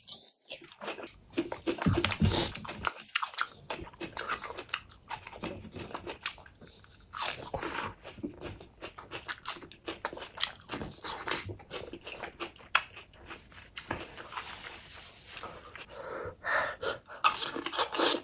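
Close-miked eating sounds: chewing and crunching a mouthful of rice, fish curry and raw cucumber, a dense run of irregular crisp clicks with louder clusters now and then.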